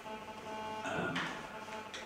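A pause in speech filled by a steady hum of several pitches, with a brief faint breath or vocal sound about a second in.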